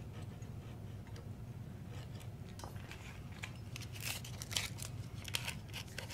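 Small razor saw cutting a string slot in a guitar nut freshly filled with bone dust and super glue: faint, short rasping strokes, irregular and mostly in the second half.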